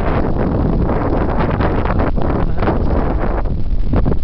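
Wind buffeting the microphone: a loud, steady low rumble with small gusty swells.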